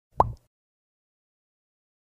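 A single short pop sound effect near the start: a quick, upward-gliding bloop.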